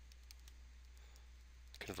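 Faint, scattered clicks of a stylus tapping on a pen tablet while writing, over a steady low hum. A man's voice starts speaking near the end.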